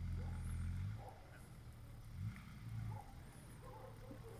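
Range Rover P38 engine revving in two short bursts of throttle as the truck crawls over rocks, a low rumble in the first second and again briefly between two and three seconds in, idling between.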